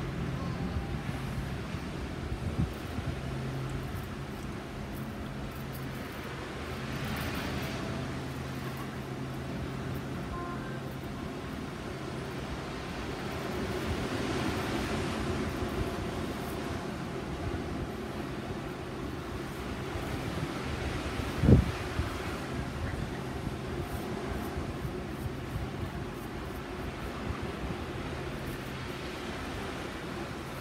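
Outdoor background of a steady low hum and road traffic that swells and fades as vehicles pass, with a single sharp knock about two-thirds of the way through.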